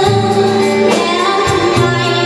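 Live band playing: a woman singing held notes into a microphone over electric guitars, electric bass and a steady drum beat.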